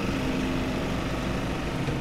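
Cartoon car engine sound effect as the monster car drives off: a loud, steady, noisy engine sound that cuts off abruptly at the end.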